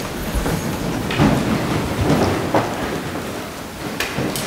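Rustling, shuffling and scattered low thumps of a choir and congregation sitting down in wooden pews.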